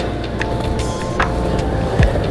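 Skateboard wheels rolling over a plywood skatepark floor, a steady low rumble, under background music. There is a sharper click a little past halfway.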